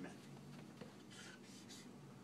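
Marker pen strokes on flip chart paper: two faint, short scratchy strokes about a second in, over a steady low room hum.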